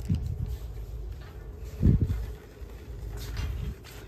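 Steady low hum of store background noise, with one dull thump about two seconds in and faint handling rustles.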